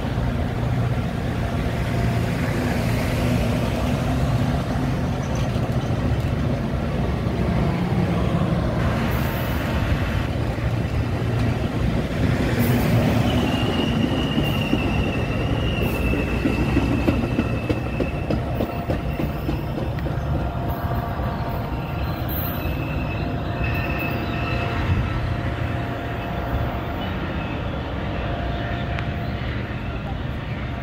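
Metra bilevel commuter cars rolling past along the platform, a steady loud rumble of steel wheels on rail. A thin high squeal comes in for a few seconds around the middle and returns briefly later. The rumble eases slightly near the end as the train draws away.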